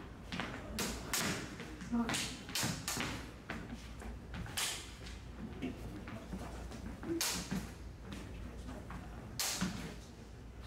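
Combat lightsabers with polycarbonate blades clashing and striking in a sparring bout: a string of sharp, irregularly spaced hits and swishes, with voices in the background.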